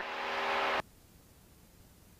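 Light aircraft engine and cabin noise heard through the headset intercom, a steady hum with hiss that cuts off suddenly less than a second in, leaving near silence.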